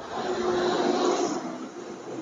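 A motor vehicle passing nearby: its engine and tyre noise swell over the first half second and fade away by the end, with a faint steady engine hum underneath.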